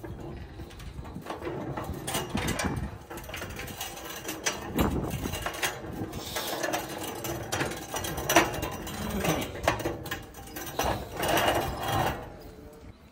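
A swinging pavement sign being tilted and dragged on its round base over paving stones, scraping and rattling, with irregular knocks from its metal frame.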